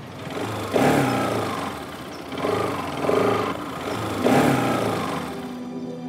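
Motorcycle engines revving in three loud surges, each rising and falling, under background music.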